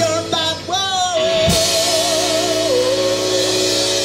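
Rock band playing live, with a male singer holding a long note with vibrato over guitars and bass. The note steps down in pitch about two-thirds of the way through.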